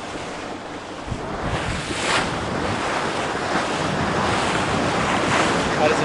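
Wind buffeting the microphone over the wash of open-ocean water, growing gradually louder.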